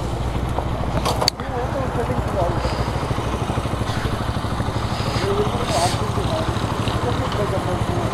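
An engine idling steadily, with people talking in the background and a brief click about a second in.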